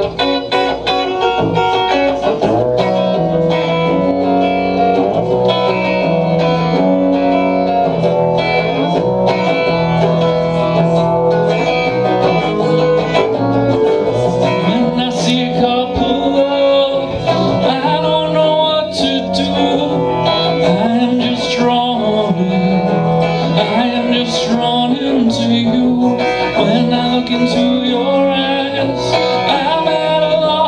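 Electric guitar, Telecaster-style, played live in an upbeat, steady strummed chord pattern.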